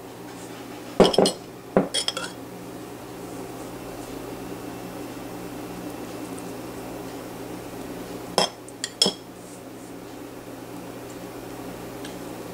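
A metal spoon clinking against a relish jar and plate as relish is scooped out and spooned onto food: a cluster of clinks about a second in and two or three more past the middle, over a steady low hum.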